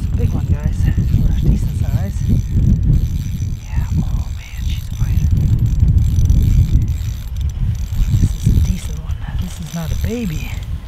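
Ice-fishing spinning reel being cranked, its gears and handle clicking, as a fish is reeled up through the hole. Under it, a heavy low rumble of wind on the microphone.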